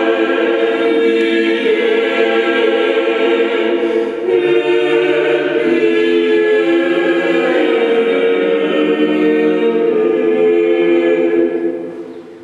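Mixed-voice vocal octet singing a cappella in long held chords, with a short break about four seconds in; the phrase ends near the end.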